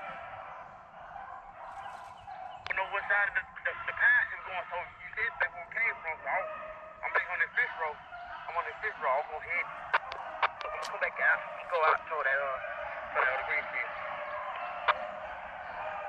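A pack of beagles baying on a rabbit's trail: many overlapping short, yelping calls start a couple of seconds in and keep going through the rest.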